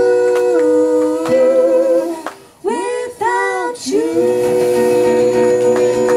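A female and a male voice singing long, wordless held notes in two-part harmony over a quiet acoustic guitar, with a brief break in the middle and a final long note held from about four seconds in.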